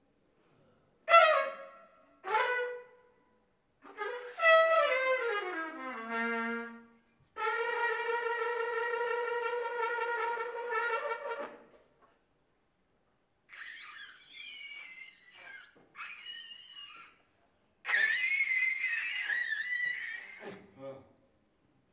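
Unaccompanied trumpet with an upturned bell, improvising: two short sharp blasts, a note sliding down in pitch, a long steady held note, then quieter breathy high squeaks and a louder wavering high tone near the end, with silences between the phrases.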